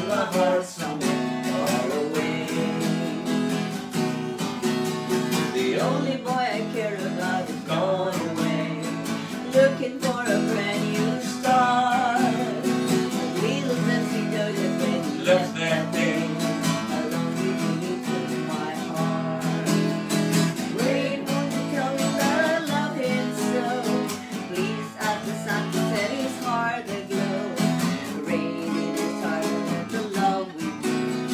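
Acoustic guitar strummed steadily as song accompaniment, with some singing over it.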